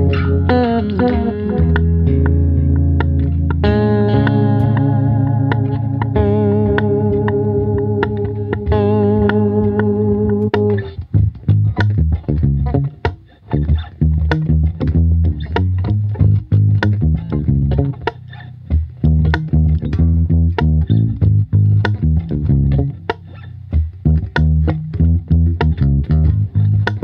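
Seven-string electric bass, a Cunningham RLJ-S7, played solo: held, ringing chords and notes for the first ten seconds or so, then short, percussive plucked notes with brief gaps between them.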